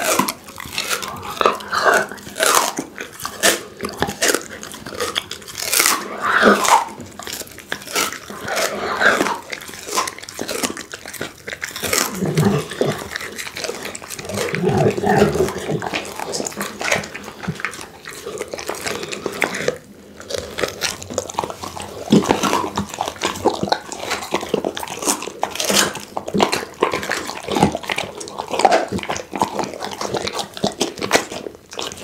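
Pit bull chewing and crunching a raw pony rib close to the microphone: irregular, rapid cracks and crunches of teeth on bone throughout.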